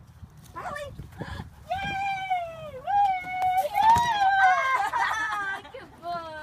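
A series of high-pitched, drawn-out vocal cries, some sliding down in pitch, with two overlapping near the end.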